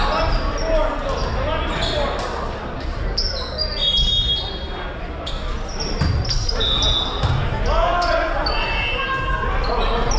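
Volleyball rally in a large, echoing gymnasium: sharp knocks of the ball being hit and landing on the hardwood, short high sneaker squeaks a few times, and players and spectators calling out.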